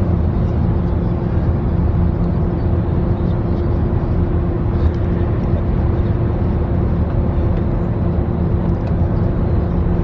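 Steady low rumble of a moving coach bus heard from inside the cabin, engine and road noise together, with a constant hum running through it.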